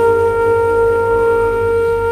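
Background music: a wind instrument, flute-like, holding one long steady note over a low drone.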